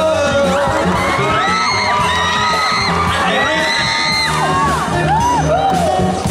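A live band playing on stage, with singing and acoustic guitar. Over the music, several audience members whoop and cheer in overlapping high calls, thickest in the middle stretch.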